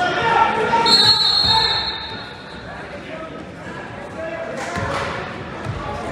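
Voices of wrestling coaches and spectators calling out in a large gym, over thuds of wrestlers' feet on the mat. About a second in there is a high steady squeal lasting about a second.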